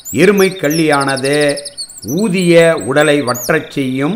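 Small birds chirping in the background: thin high-pitched repeated calls, with a fast trill of short notes from about half a second in lasting roughly a second. A man's voice talks over them.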